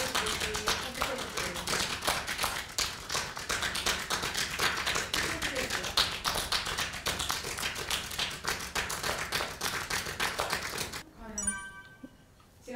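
Rapid, irregular tapping clicks, many a second, run steadily and stop about eleven seconds in.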